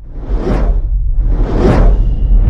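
Two whoosh sound effects, the second about a second after the first, each swelling and fading over a deep low rumble that builds: the opening of a logo intro sting.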